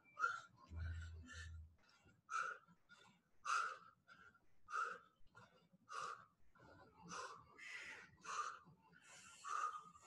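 A person breathing hard under exertion, with short forceful puffs about once a second that come a little quicker near the end. Two low thumps sound about a second in.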